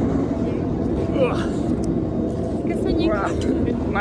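Chairlift station drive machinery running with a steady low hum and rumble as the chairs move through the station without stopping. Brief snatches of voices sit on top.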